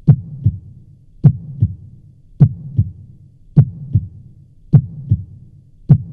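Heartbeat sound effect: a low, steady lub-dub double thump repeating a little slower than once a second.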